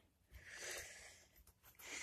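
Near silence, with one faint, brief, soft noise about half a second in.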